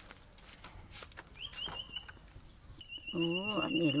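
A high, thin animal call, twice: a short one about one and a half seconds in, and a longer, fast-warbling one near the end, with a woman speaking over it.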